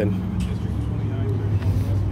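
Steady low hum of an idling emergency vehicle's engine, with faint voices in the background.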